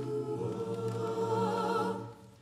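A mixed a cappella group sings a held chord of several voices, with one higher voice wavering on top in the second half. All voices cut off together at the end.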